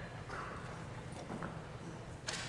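Footsteps and scattered knocks on a stage floor as chairs and music stands are moved about, over a steady low hum.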